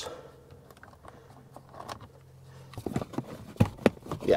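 Quiet handling of a screwdriver and a plastic trim panel as a Torx screw comes out, with a faint low hum underneath. It ends with a few short, sharp knocks of hand and tool on the plastic.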